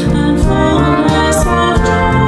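A small brass band of trombone and trumpet, with drum kit and keyboard, playing a slow worship song to a steady beat. A cymbal splashes about a second and a half in.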